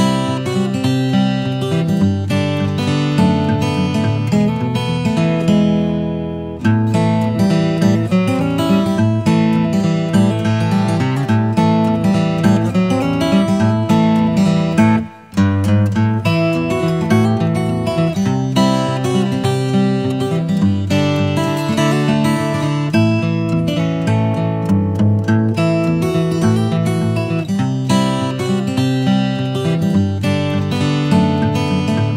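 Background music led by a strummed acoustic guitar, with a steady rhythm. It dips briefly about six seconds in and cuts out for a moment about halfway through.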